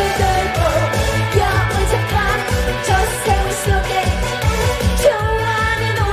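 Woman singing a Korean pop song live into a handheld microphone over amplified backing music with a steady drum beat.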